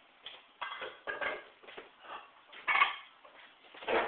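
Metal weights clanking against each other and the bar as 15 pounds is loaded onto the lever of a bridge-testing rig: a run of short clanks, the loudest nearly three seconds in.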